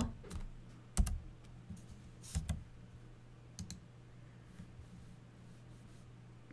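A few scattered clicks from computer keys and mouse buttons, the sharpest about a second in and a quick pair a little after two seconds, over a faint steady low hum.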